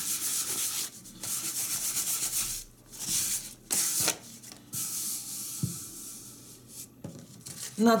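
Brown wrapping paper rubbed briskly over a dried first coat of water-based acrylic varnish on a chalk-painted watering can, smoothing out the varnish streaks: a papery scratching hiss in runs of quick strokes with short pauses, fainter in the second half.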